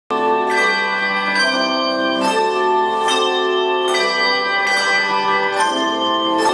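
A group of brass handbells ringing together. Fresh strikes come about once a second, and each set of tones rings on and overlaps the next, so the sound is a continuous chiming.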